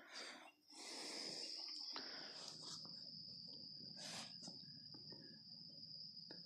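Faint, steady high-pitched trill of crickets.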